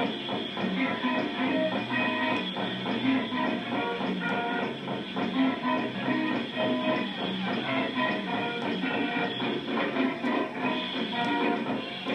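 Live rock band of electric guitar, bass and drums playing its closing number, steady and rhythmic, on a muffled, low-fidelity recording.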